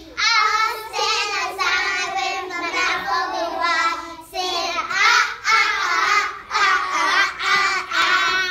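A group of young children singing a song together in unison, in sung phrases broken by short pauses for breath.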